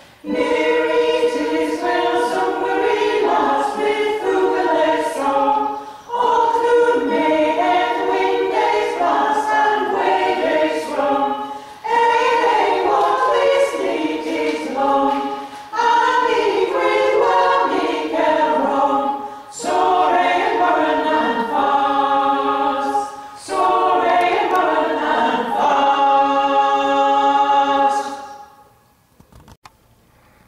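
Women's a cappella choir singing in several-part harmony, in phrases of a few seconds with short breaths between them. The song ends on a held chord that stops right at the end.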